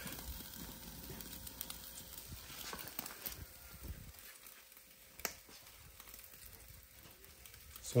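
Faint sizzling with scattered sharp crackles from a bacon-topped pizza baking in a gas-fired pizza oven, the bacon burning in the heat.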